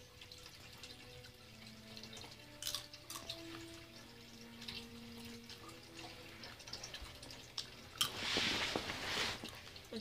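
Coffee maker brewing: faint drips and gurgles with small clicks, then a short hiss about eight seconds in.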